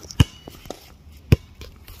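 A Spalding basketball bouncing twice on an outdoor hard court, two sharp bounces a little over a second apart.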